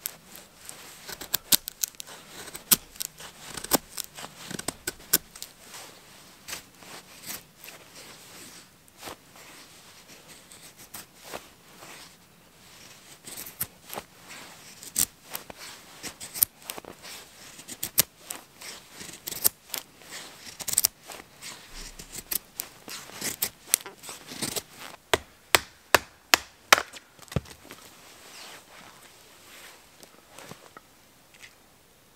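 Knife blade shaving thin curls down a dry wooden stick to make a feather stick: a long series of short, sharp scraping strokes at irregular spacing, with a run of louder, closer strokes near the end.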